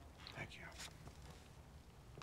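Quiet room tone broken by one brief, faint breathy vocal sound, like a whisper, about half a second in.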